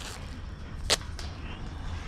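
A single short, sharp snap about a second in, with a fainter one just after, over a low steady background.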